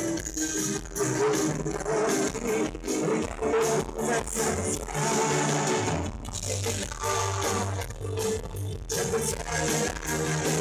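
Live rock band playing a song: guitars, keyboards and drums with a steady beat and bass line.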